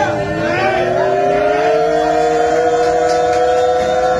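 Fans holding one long drawn-out yell together. Two voices are heard, one steady in pitch and one slowly rising.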